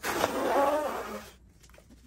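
Disposable nitrile glove being pulled on over the hand: a rubbery rasp with a faint squeak, lasting a little over a second before it stops.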